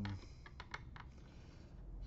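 A few light clicks and taps of hands handling the metal chassis and parts around the hard drive inside an opened Acer all-in-one PC, bunched together about half a second to a second in.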